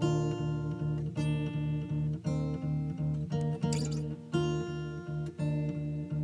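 Acoustic guitar played solo, a picked chord pattern with notes falling in a steady rhythm several times a second, and a brushed strum across the strings a little past halfway.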